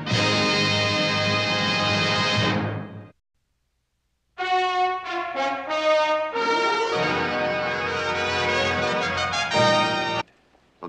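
Brass-led orchestral music fading out about three seconds in. After about a second of silence, brass music starts again with a series of held notes.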